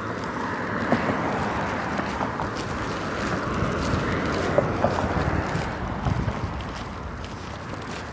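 Road traffic passing close by on a concrete road, an SUV and then a Ram pickup truck, their tyre and engine noise swelling over the first few seconds and fading toward the end.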